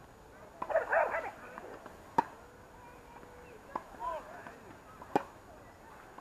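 Tennis balls struck by rackets on an outdoor hard court: two sharp pops about three seconds apart, with a fainter hit between them. A brief shouted call about a second in.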